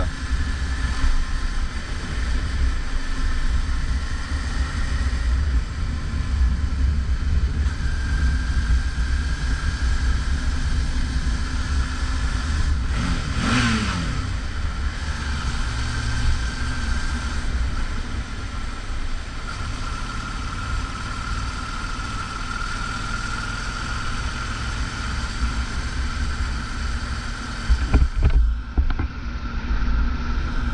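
Suzuki V-Strom 650's V-twin engine running under a continuous low rumble as the motorcycle rides through a road tunnel inside a cave, with a short blip of the throttle about halfway through.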